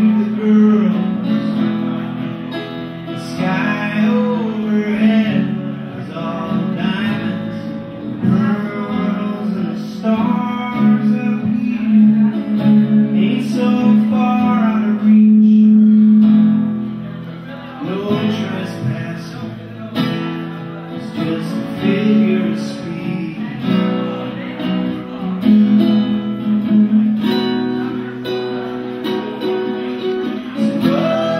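Live acoustic folk song: a man singing lead while playing an acoustic guitar.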